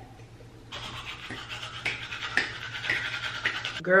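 Manual toothbrush scrubbing teeth: a rhythmic brushing noise that starts about a second in and cuts off abruptly just before the end.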